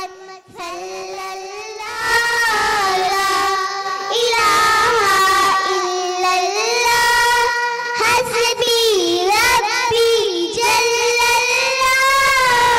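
Two young girls singing an Islamic devotional song together into microphones, in long held notes that waver and slide between pitches, with a brief pause for breath just after the start.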